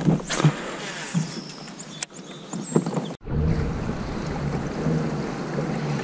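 Water and wind noise around a kayak on the move: a quiet stretch with small handling clicks and one sharp click about two seconds in, then a steady rumble that starts suddenly about three seconds in.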